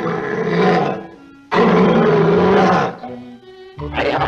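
A cartoon lion roaring twice: a first roar at the start, then a louder, longer one from about one and a half seconds in. Orchestral score plays between and after.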